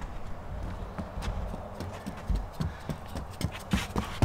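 A child's running footsteps on a wooden boardwalk: quick, even thuds on the boards that grow louder as the runner comes closer.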